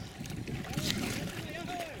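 Faint voices talking over a steady low rumble aboard a small open boat.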